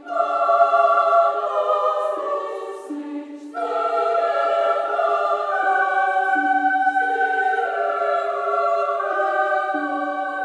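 Women's choir singing slow, sustained chords in several voice parts. A phrase opens at the start and fades about three seconds in, and a fuller phrase enters half a second later and holds with shifting chords.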